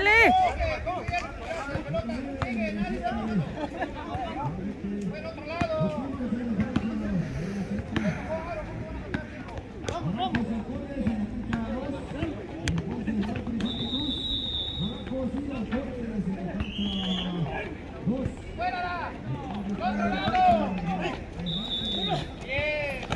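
Men's voices calling out and talking on and off during an outdoor pickup basketball game, with scattered sharp thuds from the ball bouncing on the asphalt court.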